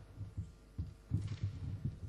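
A series of dull, irregular low thumps and knocks with a brief rustle about a second in: handling noise on a lectern microphone as someone settles at the rostrum.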